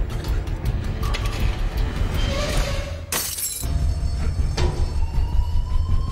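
Tense action film score with a pulsing beat over a low drone. It swells to a loud crash about three seconds in, and a slowly rising tone follows.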